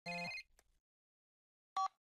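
Cell phone ringtone: a short electronic ring at the start and a brief second tone near the end, just before the call is answered.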